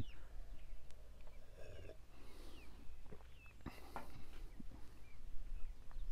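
A man drinking beer from a glass, with soft gulping and breathing, and a couple of light knocks about three and a half and four seconds in. Faint bird chirps, short calls that slide downward, sound in the background.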